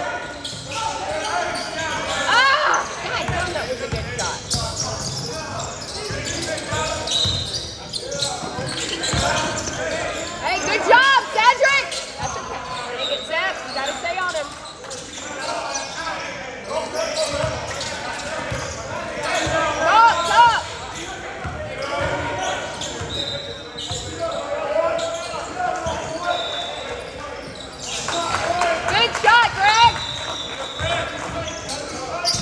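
Basketball game on a hardwood gym court: sneakers squeaking on the floor in several short bursts, the ball bouncing on the dribble, and players' voices echoing through the large hall.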